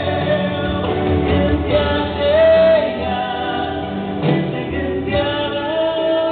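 A man and a woman singing a Romanian Christian song as a duet through microphones over instrumental backing, with long held notes that glide between pitches.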